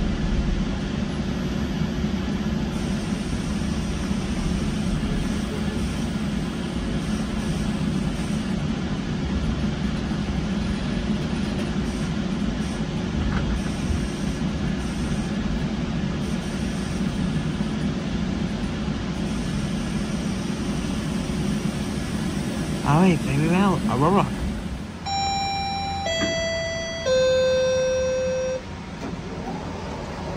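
Inside a GO Transit bilevel passenger coach, a steady low rumble and hum as the train rolls and slows into a station. Near the end, after the rumble dies down, a three-note chime sounds, each note lower than the last: the signal that the doors are opening.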